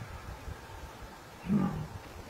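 Lion giving one short growl about one and a half seconds in, as a lioness pack attacks an elephant in shallow water.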